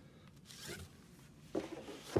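Books being handled: a book cover scraping and sliding against other books and paper, faint about half a second in and louder near the end.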